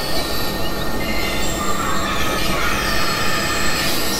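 Dense experimental noise music: several tracks layered at once, with drones and shrill, squealing high tones sliding over a steady low rumble.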